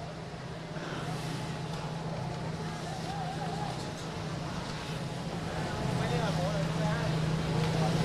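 Steady outdoor ambience with an engine humming at a constant pitch, under a noisy wash of sound and faint background voices. The sound grows slightly louder in the last couple of seconds.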